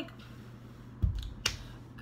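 A dull low thump about halfway through, then a single sharp click.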